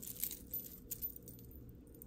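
Faint, scattered little clinks of a metal chain necklace and its beads being lifted and handled, a few irregular ticks over low room noise.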